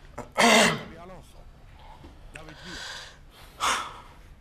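A man's gasps and breaths, without words. A loud breathy gasp with a short voiced edge comes about half a second in, softer breathing follows through the middle, and another sharp breath comes near the end.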